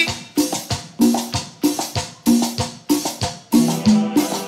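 Live tropical dance band playing an instrumental passage: a steady beat of sharp drum hits with short bass-guitar notes, the singing having stopped.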